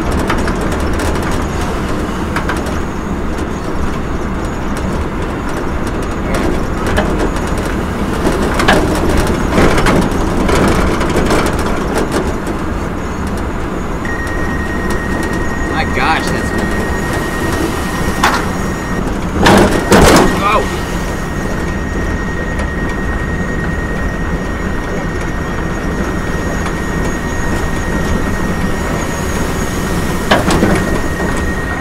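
Wind rushing over the microphone and road noise from a pickup truck driving, heard from its open bed, with scattered knocks and the loudest thumps about twenty seconds in. A thin, steady high tone comes in about halfway through and stays.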